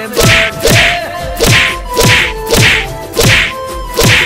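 A rapid run of whacks from flat boards beating a person, about two blows a second, each a sharp crack with a short falling thud.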